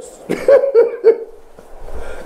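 A man's short laugh: about four quick breathy bursts in the first second, each weaker than the last.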